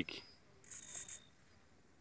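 A short, faint high-pitched whir of a radio-control servo, about a second in and lasting about half a second, as the stick is pushed to the right and the servo swings the trike's control bar down to the right.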